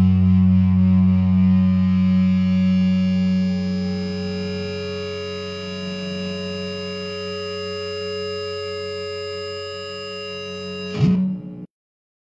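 Distorted electric guitar chord ringing out and slowly fading, closing a goth rock track. A brief noisy burst about eleven seconds in, then the sound cuts off abruptly.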